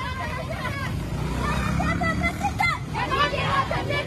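A crowd of women shouting protest slogans together while marching, many voices overlapping, over a steady low rumble of street noise.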